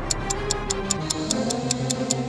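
Clock ticking, fast and even at about five to six ticks a second, over background music with held tones.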